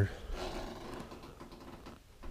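A closet door being opened, with faint mechanical clicks and rattling from its hinges or track, fading over the second half.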